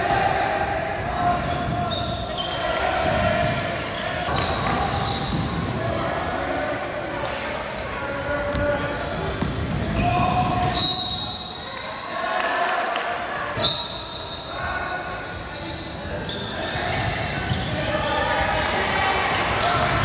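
Indoor basketball game: a ball bouncing on the court among other knocks, with players and spectators calling out, echoing in a large hall. Two brief high-pitched tones sound about halfway through.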